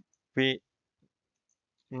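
A man's single spoken word, then near silence broken by a few faint clicks from computer keyboard keystrokes.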